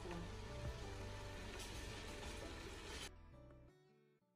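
Background music over the sizzling of a tomato-and-chickpea sauce frying in a pot with a little water. About three seconds in, the sizzling stops abruptly and the music fades out.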